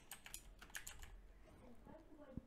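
Faint computer keyboard typing: a quick run of light keystrokes through the first second or so.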